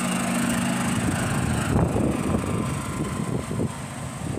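Small-engine utility cart (golf-cart type) running as it drives close past, a steady low hum that drops away about a second in. After that, irregular rough noise, like wind buffeting the microphone.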